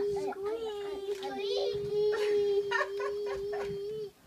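Young children's voices babbling and calling out, with one long steady held note running underneath.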